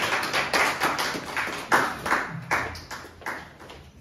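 A small group of people clapping, several irregular claps a second, thinning out and dying away near the end.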